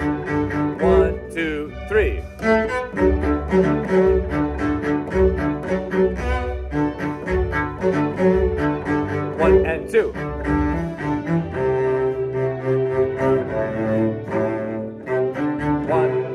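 A cello played live over a string orchestra recording, the cello taking the viola part an octave below its usual register, with a regular low pulse in the accompaniment. A man counts the beats aloud briefly about ten seconds in.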